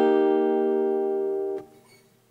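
A guitar chord rings out as an ear-training example, slowly fading, then is damped and stops short about one and a half seconds in.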